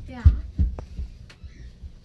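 Dull low thumps, a few of them close together early on and fewer later, from footsteps and handling of a handheld phone camera being carried while walking.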